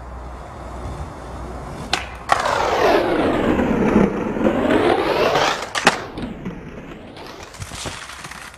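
Skateboard rolling on pavement, a sharp pop and a clack as it gets onto a concrete hubba ledge about two seconds in, then a loud grinding scrape for about three seconds as it slides down the 27-stair ledge. A loud clack as it comes off near the bottom, followed by a few smaller knocks.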